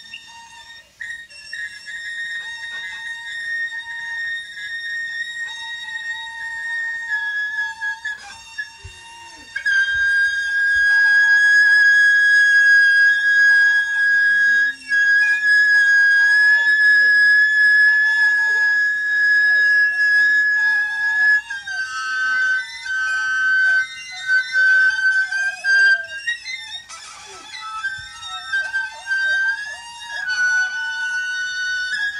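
Free-improvised duet of alto saxophone and a string instrument: long, high, whistle-like held notes, the loudest held from about ten seconds in until about twenty-one seconds, then shorter, shifting high notes, with faint sliding sounds underneath.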